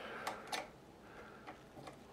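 A few faint, light metallic clicks, the loudest about half a second in: a small open-end wrench knocking against the brass Bowden tube coupling on a 3D printer's extruder as it is fitted to the coupling.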